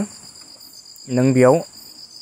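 A man's voice says a short phrase about a second in, over a steady background of several thin, high-pitched tones, the lowest of them slightly pulsing.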